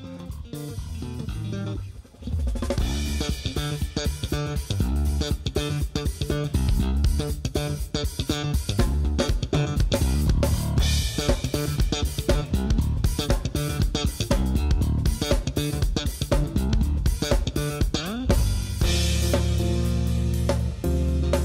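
Electric bass and drum kit playing a rhythmic band groove. It is thinner and quieter for the first couple of seconds, then the full groove comes in.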